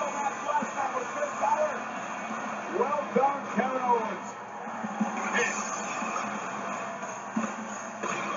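Televised wrestling broadcast playing in the room: a commentator's voice over steady background noise, with music underneath.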